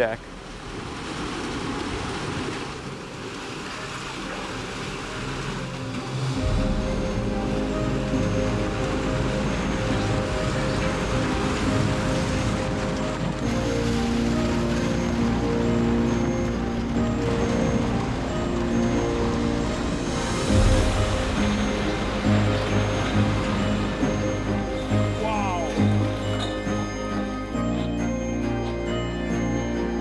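Background music laid over the footage, with a bass line coming in about six seconds in.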